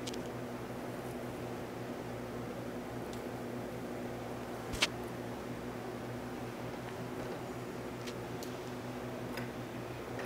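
Electric fan running with a steady hum. A few faint ticks come through, and one sharper click about halfway through.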